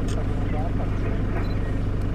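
Safari vehicle's engine idling, a steady low hum heard from inside the vehicle, with faint murmured voices over it.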